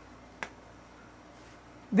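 A single short, sharp click about half a second in, against quiet room noise.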